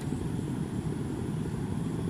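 Steady low background rumble with a faint hum, constant in level and without sudden sounds.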